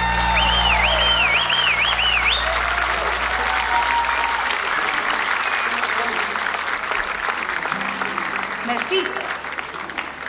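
Large crowd applauding and cheering after a bluegrass song ends, with a wavering whistle over the clapping for the first two seconds or so. The applause slowly thins out toward the end.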